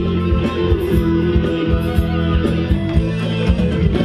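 Live band playing Thai ramwong dance music over loudspeakers, with a steady beat.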